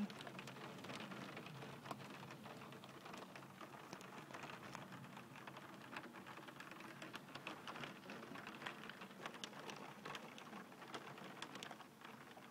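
Faint storm rain pattering, a dense, steady scatter of small drop ticks.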